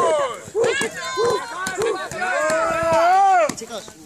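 Several people yelling and whooping together, with short shouts and long, drawn-out rising and falling cries. The loudest is one long held yell about three seconds in, after which the voices die down.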